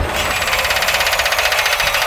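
A rapid, even mechanical rattle or whir, about a dozen clicks a second, held steady over a low rumble, as a sound effect in an animated title sequence.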